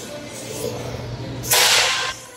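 A Velcro strap torn open: one loud, rasping rip about half a second long near the end.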